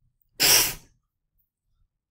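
A person sneezes once, a single short sharp burst lasting about half a second.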